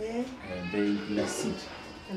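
Speech: a man and a woman in conversation in Malinké.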